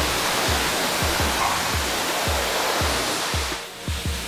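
High-pressure water wand spraying onto a car's hood, a steady loud hiss that cuts off shortly before the end. Background music with a steady beat runs underneath.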